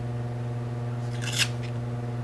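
Washi tape being handled and laid onto planner paper, with one brief rustle about a second and a half in, over a steady low electrical hum.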